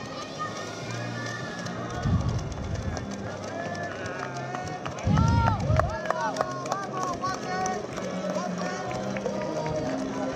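Street sound along a marathon course: the footfalls of a pack of runners on the road, with spectators shouting and cheering and music playing. Two short low rumbles come about two and five seconds in.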